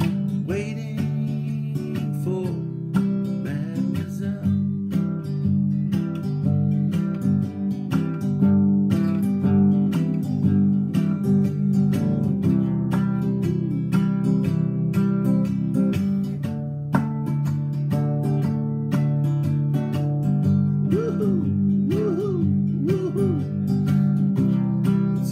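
Acoustic guitar strumming chords steadily in an instrumental passage of a song.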